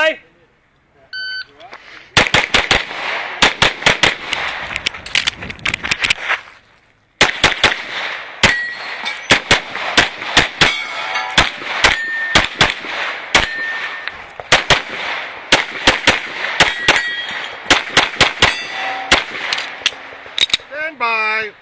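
A shot timer beeps once, then a race-gun pistol fires fast strings of shots, with a break of about a second partway through. Steel targets ring after some of the hits.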